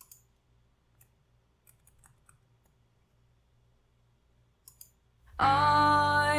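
A few faint, scattered clicks against near silence, as the reaction video is being set up on a computer. About five seconds in, music starts abruptly with sustained, layered tones.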